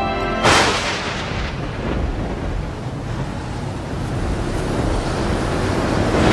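A sudden loud blast about half a second in, then a long low rumble that swells into a louder rushing burst near the end and cuts off suddenly: an explosion-like sound-design effect.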